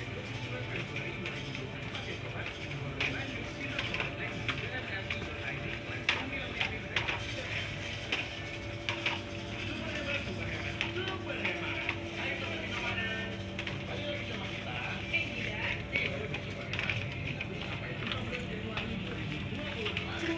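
Shop interior ambience: a steady hum under faint background music and indistinct voices, with a few sharp clicks and knocks.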